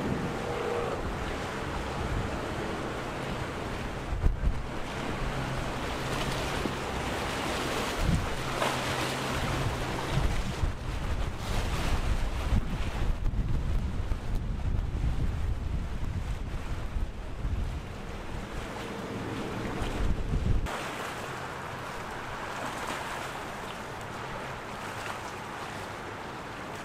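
Outboard engines of a passing center-console catamaran running at cruising speed, a steady low hum under the wash of water and wind on the microphone. About two-thirds of the way through it drops suddenly to a quieter hiss of water and wind.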